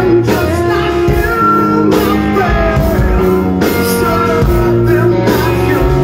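Live hard rock band playing loud: distorted electric guitar, bass and drum kit, with a lead singer singing over them.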